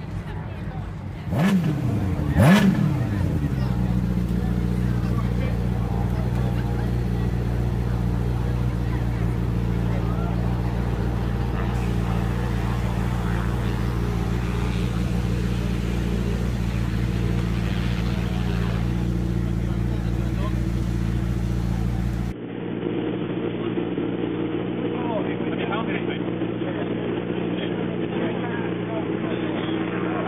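Racing sidecar outfit's engine started, revved twice in quick succession about two seconds in, then idling steadily.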